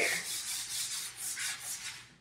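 Chalk scratching on a chalkboard in a quick series of short strokes, about five a second, as something is drawn or marked on the board.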